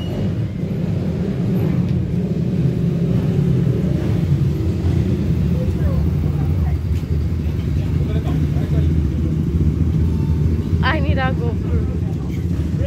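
Motorcycle engine running at low revs as the bike rides slowly by, a steady low rumble.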